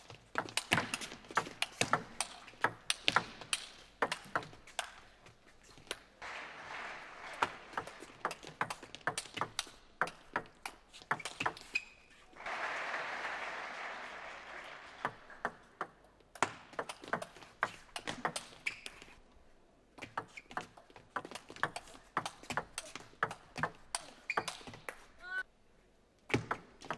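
Table tennis rallies: the celluloid ball clicking quickly back and forth off the bats and the table. Two stretches of audience applause fill the gaps between rallies.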